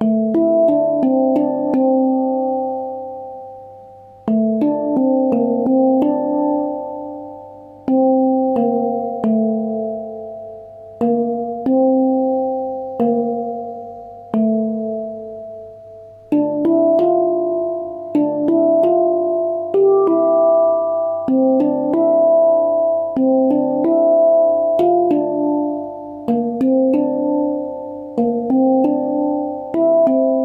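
Handpan (hang drum) tuned to D minor Kurd, playing a melodic pattern of single struck notes that ring and fade. It plays in short phrases separated by brief gaps for about the first 16 seconds, then more densely with overlapping ringing notes.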